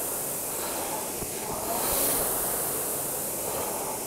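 Concept2 indoor rowing machine's air flywheel whooshing through one easy warm-up stroke: the whoosh swells about halfway through, then fades as the wheel spins down, over a steady hiss.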